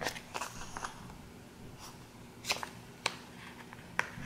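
A sticker sheet being picked up and handled: a few light, scattered crinkles and taps of paper, the sharpest two about two and a half and three seconds in.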